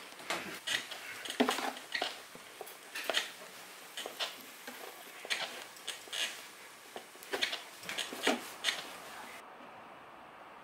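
Hands kneading sujebi dough in a plastic basin: irregular squishing, slapping strokes, roughly one or two a second, stopping shortly before the end.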